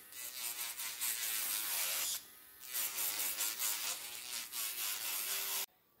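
Electric nail drill grinding gel polish off a fingernail, its motor whine wavering in pitch as the bit presses on the nail. It stops briefly about two seconds in, resumes, and cuts off abruptly near the end.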